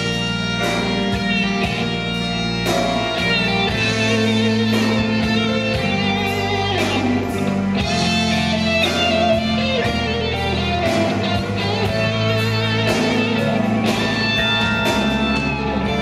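Live instrumental rock band: an electric guitar plays a sustained lead melody with vibrato over held bass notes and drums with repeated cymbal crashes.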